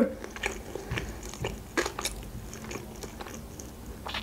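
Close-miked chewing of a mouthful of sushi roll: soft, wet mouth clicks scattered irregularly, with a few slightly louder ones.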